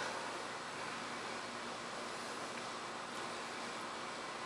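Steady, even hiss of room tone with no distinct events.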